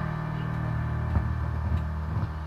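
Steady low electrical hum from a live microphone and amplifier after the song ends, with a couple of soft clicks as the handheld microphone is moved.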